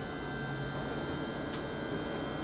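Electric motor of a bariatric ambulance's power lift gate running as the gate lowers a loaded stretcher: a steady hum with a high whine, and a brief click about one and a half seconds in.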